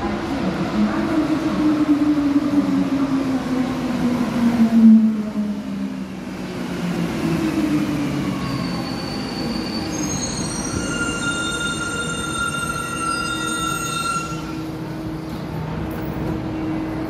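Rubber-tyred Santiago Metro Line 5 train pulling into a station and braking to a stop: its motor whine falls in pitch over the first five seconds, then a set of steady high-pitched tones sounds for about four seconds and cuts off as the train halts.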